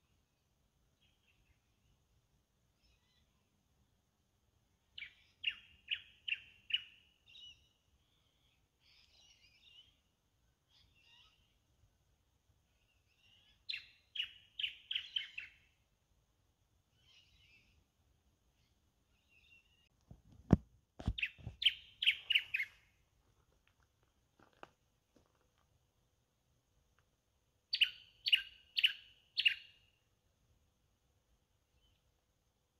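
A bird calling in short phrases of four or five sharp, high notes, repeated four times about every seven to eight seconds, with faint chatter between. Two sharp knocks come about two-thirds of the way through.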